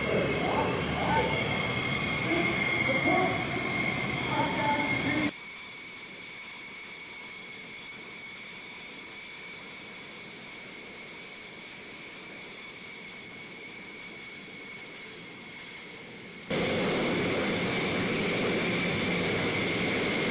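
F-16 fighter jet engines running at idle as the jets taxi: a steady high-pitched whine over a rush of exhaust. About five seconds in it drops away to a faint steady hiss, and the whine comes back near the end.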